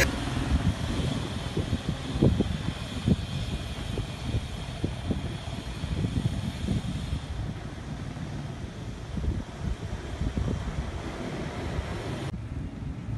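Car driving off and passing street traffic, a steady outdoor traffic sound with wind buffeting the microphone in irregular low thumps.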